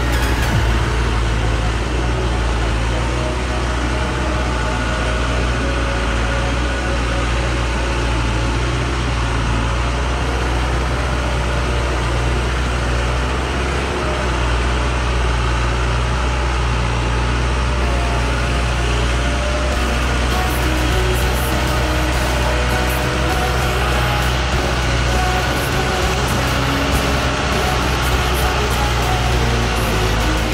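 Diesel engine of a Dongfeng truck running steadily as it crawls along a rough dirt track, with background music over it.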